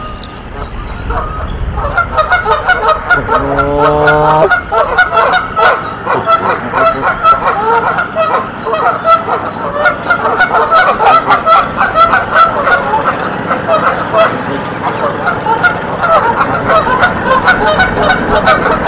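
Canada geese honking: a rapid, continuous run of short overlapping calls that starts about two seconds in, with one longer, lower call from about three to four and a half seconds.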